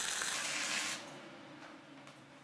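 Stick-welding arc with an E6013 rod, crackling and hissing, then cutting out sharply about a second in, leaving only a faint hiss.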